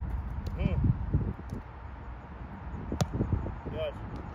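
Soccer ball being played on artificial turf: a few light touches, then one sharp strike about three seconds in, over a steady low rumble outdoors.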